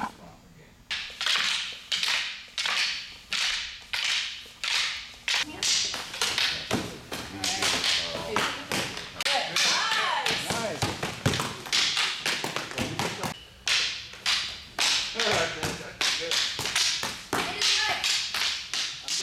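Rattan fighting sticks striking in full-contact sparring between fighters in padded armour and helmets. The sharp hits start about a second in and keep up at roughly two a second.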